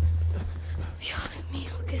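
A whispered, breathy voice over a low steady hum; a spoken word begins right at the end.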